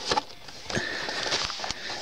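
Cardboard model box being opened by hand: card and packaging rustling and scraping, with a few light clicks and a brief squeak of card sliding on card.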